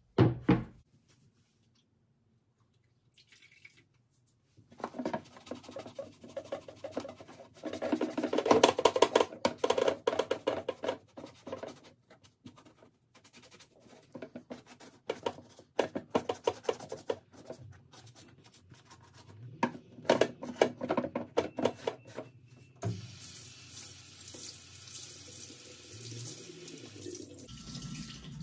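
Wet sponge scrubbing foam leather cleaner over a leather boot in rhythmic bouts. Near the end a tap runs steadily for a few seconds.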